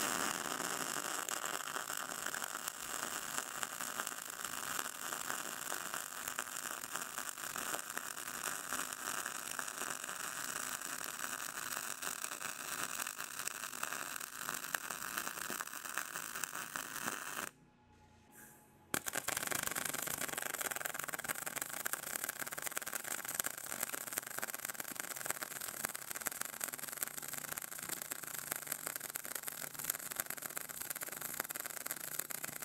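MIG welder running short-circuit beads with a steady crackle: the first bead on DCEP (electrode positive), at 375 in/min wire feed and 21 volts. The arc stops about 17 seconds in, and a second bead, on DCEN (electrode negative), starts a second and a half later.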